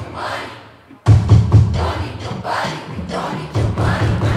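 Live electronic pop music. After a brief drop about a second in, a loud, heavy bass and drum beat comes in.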